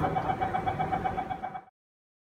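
Metro train door-closing warning: a rapid run of short, high beeps at one pitch, about eight a second, over the low rumble of the carriage, cutting off suddenly near the end.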